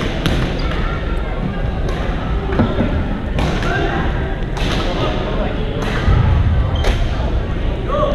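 Badminton rackets striking a shuttlecock in a rally: about six sharp hits, one every second or so, over the steady din of a busy sports hall.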